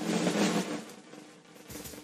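A drum roll on a jazz drum kit swells up at the start and fades away over a low held note, opening the tune. Near the end, a quick, evenly repeated pitched note begins.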